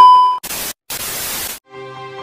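Edited transition sound effects: a loud, steady high beep cuts off a moment in, followed by two short bursts of static hiss, and then background music begins near the end.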